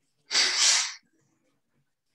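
A person sneezing once, a short loud burst under a second long about a third of a second in.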